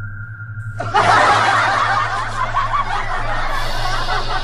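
Canned laughter: a crowd of voices giggling and snickering together, cutting in suddenly about a second in over a low steady hum, after a steady high tone at the start.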